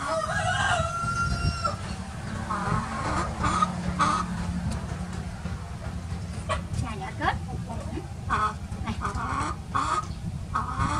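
A rooster crows once at the start, a drawn-out call of about a second and a half, then gives short clucking calls in bursts through the rest.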